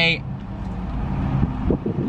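Steady low rumble inside a car's cabin during a pause in talk, with the tail of a spoken word at the very start.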